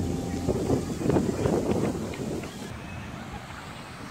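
Outdoor background of wind on the microphone and indistinct distant voices, busiest in the first couple of seconds and then settling to a quieter hum.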